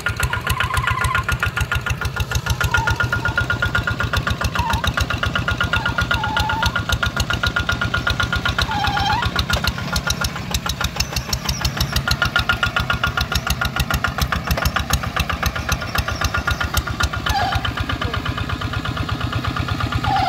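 The single-cylinder diesel engine of a two-wheel hand tractor chugging steadily in a fast, even rhythm. It is under load as its cage wheels and plow work through a high mud ridge in a wet paddy field.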